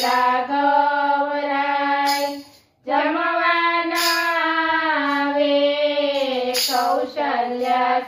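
Women singing a Gujarati devotional bhajan together, unaccompanied, in long held notes, with a short breath pause about a third of the way in.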